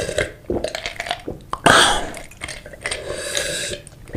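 Close-miked gulping of a drink from a glass mug: a run of short swallows, then a louder, longer gulp about one and a half seconds in, followed by a softer drawn-out swallowing sound.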